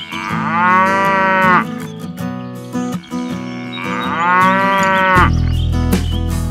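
A cow mooing twice, two long calls that rise and fall in pitch, each about a second and a half, over acoustic guitar music.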